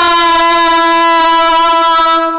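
A man singing one long, steady held note into a microphone at the end of a line of a Hindi song.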